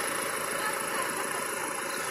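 Steady outdoor background hum and hiss with no distinct events.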